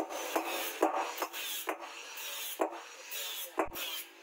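Hammer blows on a red-hot forged knife blade resting on a steel anvil: about seven irregular strikes over a steady scraping noise.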